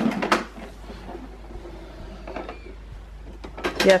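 Hard plastic parts of a Bruder toy garbage truck knocking and clunking as its bin is tilted up by hand, a few sharp knocks at the start, then quieter handling noise.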